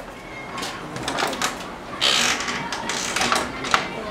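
A cloth window curtain being pushed aside by hand: rustling with several sharp clicks, loudest about two seconds in.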